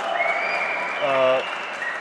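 Audience applauding, with a long high whistle-like tone held over it and a man's voice briefly about a second in.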